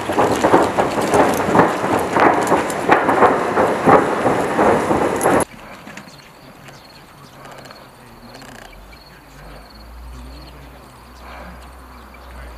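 Loud, close knocking and rustling of a soldier moving with rifle and gear, several irregular knocks a second. It cuts off about five seconds in to a quiet outdoor background with a faint low hum.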